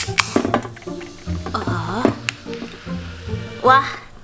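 A pull-tab drink can of carbonated drink cracked open near the start, a sharp crack with a short hiss, over background music.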